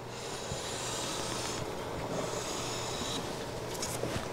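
Steel-bodied bench plane (WoodRiver No. 5-1/2) taking two light passes along the edge of a red oak board, against the grain: a shaving hiss lasting about a second and a half, then a second one of about a second. A few light knocks near the end as the plane is lifted back.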